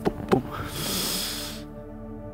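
A man's voice makes two more quick "boom" beats imitating a racing heartbeat, then lets out a long breathy exhale into the microphone that fades by about a second and a half in. Soft sustained background music plays underneath.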